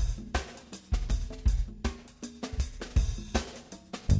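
A drum beat on a kit, with kick, snare, hi-hat and cymbal strokes in a steady rhythm of about two main hits a second, as the intro of a music track.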